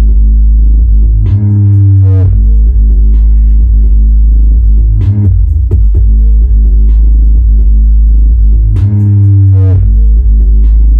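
Bass-heavy electronic music played loud through a Harman Kardon Onyx Studio 4 Bluetooth speaker, dominated by a deep sustained bass. About a second in, and again near the end, the deepest bass drops out briefly under a sweeping synth.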